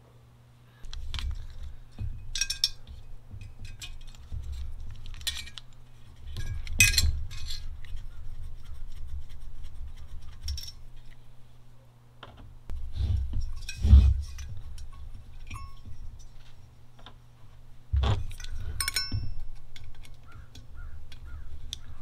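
Small metal clinks and clicks as screws are backed out of a diesel heater's aluminium housing and the loose screws and screwdriver are handled and set down, scattered irregularly with a cluster near the end. A low rumble comes and goes underneath.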